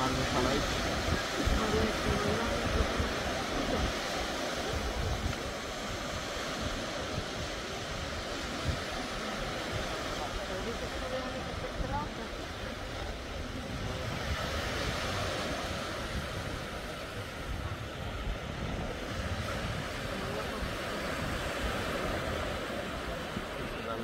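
Small waves breaking and washing up a sandy beach, with wind rumbling on the microphone and faint voices in the background.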